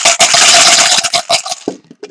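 Plastic chips rattling inside a plastic container as it is shaken hard, a dense clatter that stops about a second and a half in, followed by a few separate clicks.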